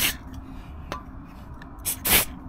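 Short hisses from an aerosol can of silicone spray being squirted onto a rubber spark plug boot. One burst tails off right at the start, and another begins near the end.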